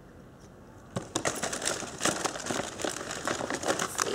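Packaging crinkling and rustling as it is handled, in quick irregular crackles that start about a second in.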